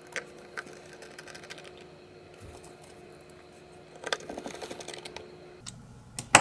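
T6 Torx screwdriver driving the back-cover screws of a DJI RC Pro controller: a few scattered light clicks, then a quick run of small clicks about four seconds in.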